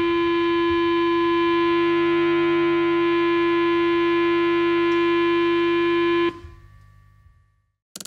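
A single held electronic tone left sounding after the band stops: one steady mid-pitched note with a fainter higher ringing note above it, unchanging in level. It cuts off suddenly about six seconds in and fades out over the next second.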